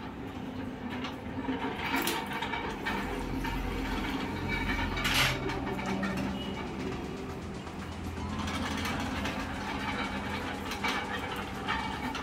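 Metal clanking and scraping of aluminium trays of coagulated rubber latex being handled at a hand-cranked rubber sheet roller, with a few sharper knocks.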